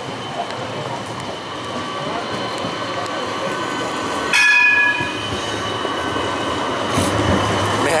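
Blue-and-white low-floor city tram rolling past close by on street rails, its rumble growing louder as it nears. A short, high-pitched wheel squeal comes about halfway through.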